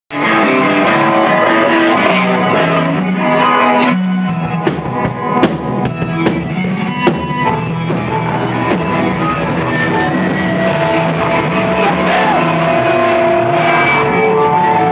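Garage punk band playing loud rock in a recording studio room, with electric guitar, bass and drum kit. Sharp drum hits stand out from about four seconds in.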